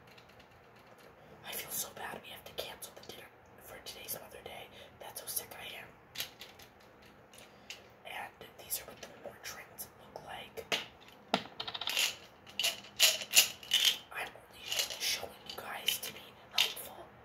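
Small plastic medicine bottle being handled and opened: a run of short sharp clicks and rattles, thickest and loudest near the end.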